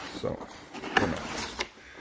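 A cardboard motherboard box being opened by hand: the lid scraping and rubbing free of the box, with a sharp click about a second in.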